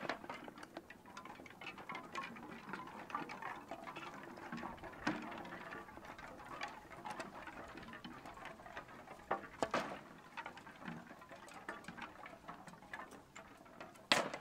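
Faint, irregular clicks and taps over a low background hiss, with a few louder clicks about ten seconds in.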